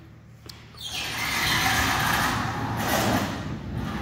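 A large sliding shop door rolling open along its track for about three seconds, starting about half a second in.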